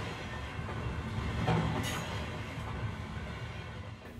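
Faint low rumble of a train rolling on rails, swelling slightly about a second and a half in.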